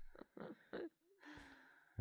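Quiet breathy laughter, a few short exhaled puffs, then a soft drawn-out sigh from a person.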